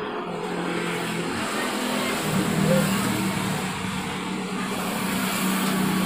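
A motor vehicle's engine running with a steady hum, louder from about two seconds in.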